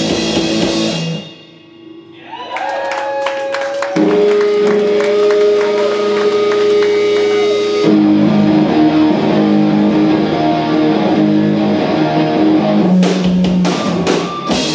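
Live rock band, electric guitar and drum kit, playing loud. About a second in the music drops away briefly, then the guitar comes back with bending, sliding notes. About four seconds in, guitar and drums crash back in together on long held chords and keep going.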